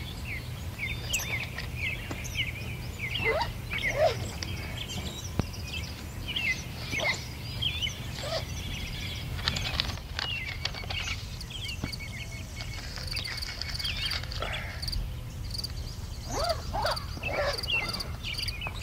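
Small birds chirping and calling again and again, some calls sliding down in pitch, over a steady low rumble of outdoor background noise. A few light knocks about ten seconds in.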